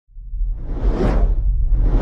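Logo-intro sound effect: a deep bass rumble with a whoosh that swells to a peak about a second in and fades, and a second whoosh starting near the end.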